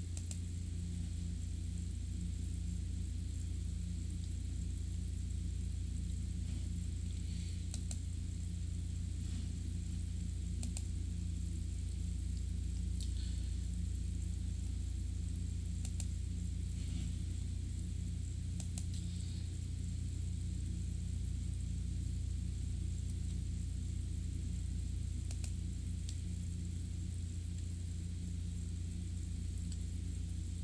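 Steady low electrical hum with hiss in the recording chain, broken by a handful of isolated sharp clicks from a computer mouse.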